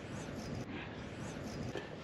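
Low, steady background noise with no distinct event, only a few faint high chirps over it.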